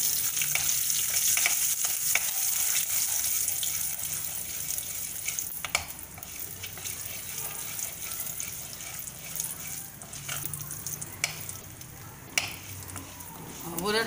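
Urad dal and mustard seeds frying in hot coconut oil for a tempering, a steady sizzle stirred by a spatula, with a few sharp pops and clicks. The sizzle is strongest for the first few seconds and then eases off.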